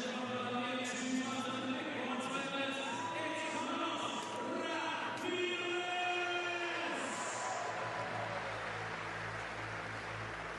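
An amplified voice drawing out long held syllables, the drawn-out style of an arena announcer introducing riders, with a low thumping beat starting about three quarters of the way through.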